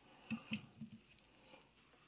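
A few faint, soft thuds as small roasted baby potatoes drop from a slotted spoon onto a platter, all within the first second.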